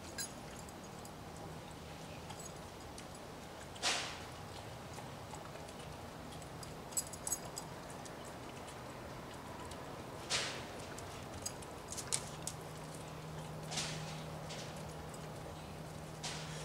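A pit bull eating french fries off a concrete patio: a dozen or so short, scattered chewing and mouthing sounds, with the clearest about four seconds in and about ten seconds in, over a faint steady hum.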